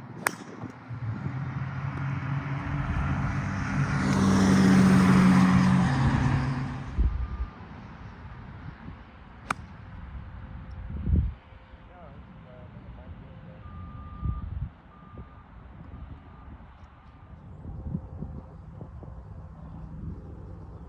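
A driver strikes a golf ball off the tee with a sharp crack. A motor vehicle then passes close by, swelling and fading over several seconds and loudest about five seconds in. A second drive cracks about ten seconds in, and a few faint, evenly spaced beeps follow later.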